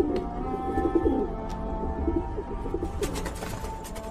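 Soft background music with sustained steady tones, and pigeons cooing over it. There are a few sharp clicks near the end.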